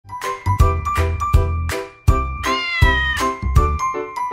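Short musical intro jingle with evenly paced, plucky beats over bass notes and a held high note. A cat's meow comes in about two and a half seconds in, falling slightly in pitch.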